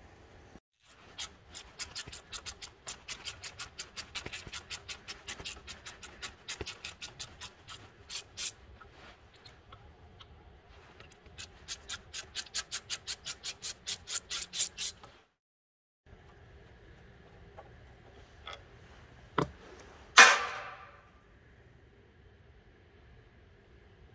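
Hand ratchet clicking in quick runs of about four clicks a second while backing off the fuel pump's mounting nuts, with a pause between runs. Near the end, a single sharp metallic clank.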